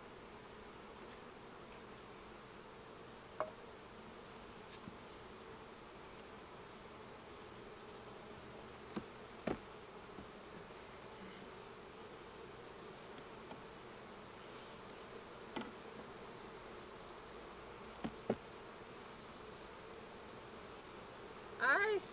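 A mass of honeybees buzzing around an opened hive, a steady hum, with a few short knocks scattered through it.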